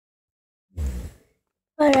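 A sigh about a second in, a short breath out that blows on the microphone, followed by the start of a spoken word.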